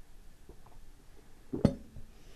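An empty stemmed beer glass set down on a hard surface, one sharp knock about one and a half seconds in, with a brief faint ring after it.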